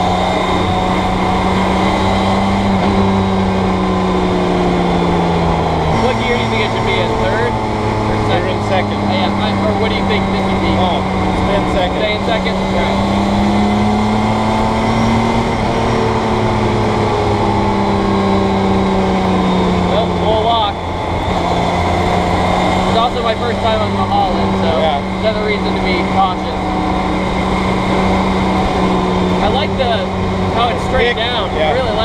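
Campagna T-Rex's BMW K1600 inline-six motorcycle engine running while the three-wheeler is driven. Its pitch swells up and eases down as the throttle changes, with a jump in pitch about six seconds in and a brief drop about twenty seconds in.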